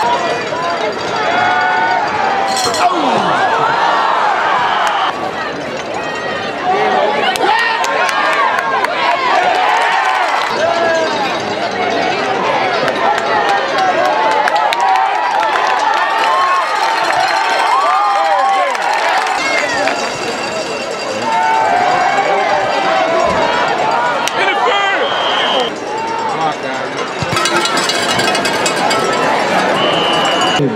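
Football crowd in the stands cheering and shouting, many voices overlapping into a continuous din, dipping briefly a couple of times.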